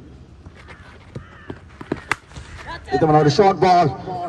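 A single sharp crack of a cricket bat striking the ball about two seconds in, followed by a man's loud, excited voice for about a second as the shot is played.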